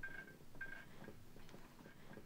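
A door's hinge creaking faintly in a few short squeaks as the door is slowly eased open.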